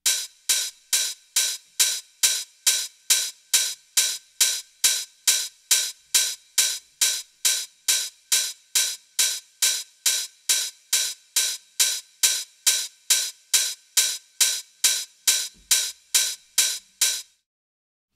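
Open hi-hat sample from a 138 BPM trance track playing alone in a steady pattern of about two short, bright hits a second, stopping shortly before the end. It is the groove's driving offbeat open hat, processed with an SSL EQ hi-hat preset.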